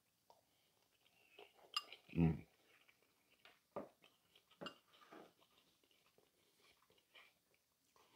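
Faint eating sounds: a few light clicks of a spoon and bowl, and quiet chewing, with one short satisfied "Mm" about two seconds in.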